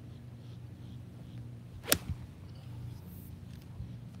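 A golf iron striking a ball off the turf: one sharp crack about two seconds in, with a smaller knock just after it.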